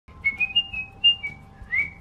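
A woman whistling a short tune: a few brief high notes stepping up and down, ending on a rising note.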